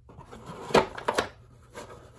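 A stack of 1984 Donruss baseball cards being slid back into a cardboard storage box: card stock rustling and scraping, with three sharp taps of the cards against the box, the loudest about three quarters of a second in.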